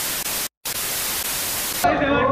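Loud, even white-noise static, hissing across all pitches and starting and stopping abruptly. It drops out for a split second about half a second in, then runs again until just before the end.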